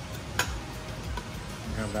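A metal fork clicks once against a ceramic plate about half a second in, then scrapes quietly as it twirls noodles.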